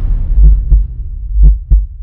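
Deep bass thumps in heartbeat-like pairs, about one pair a second, from the outro's electronic sound design, over a low rumble fading away.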